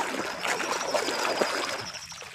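Hand scrubbing a plastic toy in a basin of foamy soapy water: irregular sloshing and splashing with small crackles of foam bubbles, easing off near the end.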